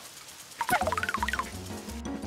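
A short, fast warbling call, gobble-like, about two-thirds of a second in, over low background music.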